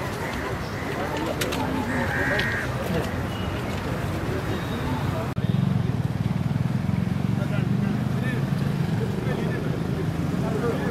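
Outdoor crowd ambience of people talking among themselves, with a short high chirp about two seconds in. After an abrupt cut a little past halfway, a steady low rumble of street traffic runs under the voices.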